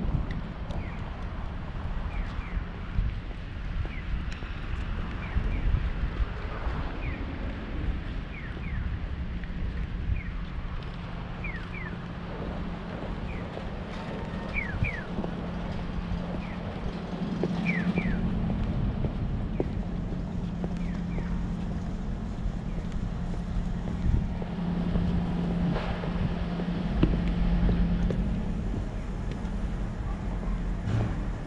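Busy city street ambience: a steady low traffic rumble and hum, with wind buffeting the microphone. Short high chirps come and go through the first two-thirds.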